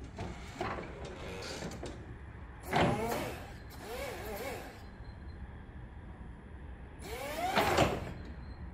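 Toyota electric forklift running, its electric motor whining in pitch that rises and falls, loudest in two spells about three seconds in and near the end.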